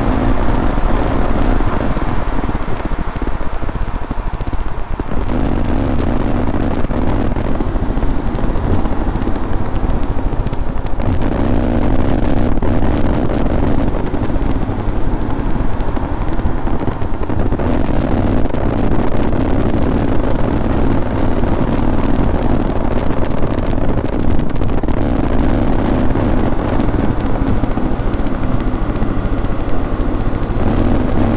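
Harsh noise music: a dense, unbroken wall of distorted static. A deeper layer swells in and drops back every five or six seconds.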